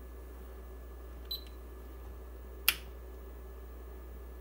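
Power toggle switch of an Anatek 50-1D linear bench power supply flicked on with a single sharp click a little under three seconds in, turning the supply on into a 50-ohm load for a turn-on test. A faint short beep comes about a second in, over a low steady hum.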